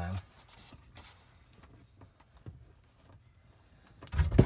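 A few faint knocks and clicks of hands working the plastic bypass valves at the back of an RV water heater, with quiet in between.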